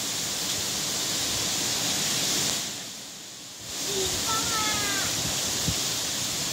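Steady outdoor hiss that dips for about a second in the middle. About four seconds in comes one short pitched call, falling slightly, under a second long.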